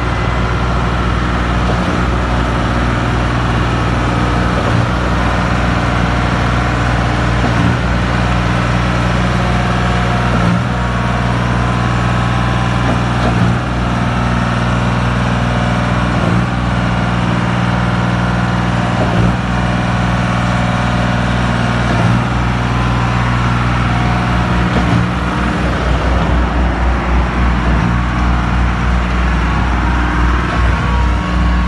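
Diesel engines of a volumetric concrete mixer truck and a concrete pump truck running steadily while concrete is mixed and pumped, a continuous low hum, with a pulsing low rumble in the last few seconds.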